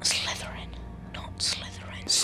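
A boy whispering several breathy words over a low steady hum.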